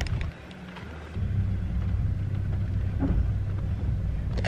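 Low, steady rumble of a car heard from inside its cabin, growing louder about a second in.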